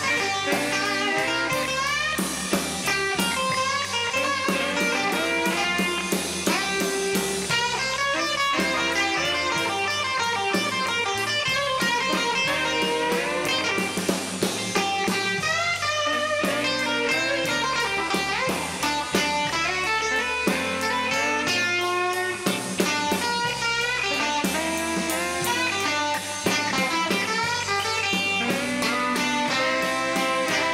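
Instrumental break in a blues song: an electric guitar plays a lead line with bending notes over bass and drums, with no singing.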